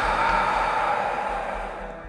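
A long breath blown out through pursed lips, a steady breathy rush that slowly fades over about two seconds: a slow meditation exhale through a small hole in the lips.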